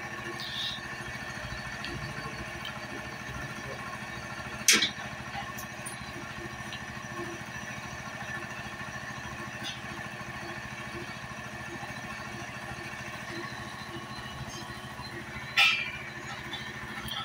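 Steady machine hum, like an engine running somewhere nearby. A single sharp click about five seconds in and a brief louder knock near the end, as of hand work on the engine.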